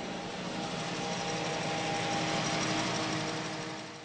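Steady whirring hum of cooling fans and power supplies in a room of running computer equipment, with a few faint high steady tones over it. The hum fades out near the end.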